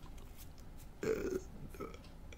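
Speech only: a man's short hesitant "uh" about a second in, otherwise low room tone.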